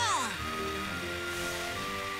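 Fire extinguisher spraying with a steady hiss, under background music; a shouted word falls away at the very start.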